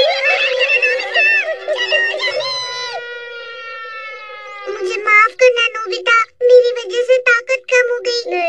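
High-pitched cartoon character voices making wordless straining cries with a wavering pitch. About three seconds in they give way to a long held note that slowly falls in pitch for nearly two seconds, followed by short, choppy voice sounds.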